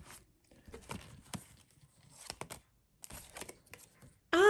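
Quiet rustle of tarot cards sliding against one another on a table as one card is drawn from a spread-out deck, with scattered short clicks. A small tabletop water fountain drips in the background.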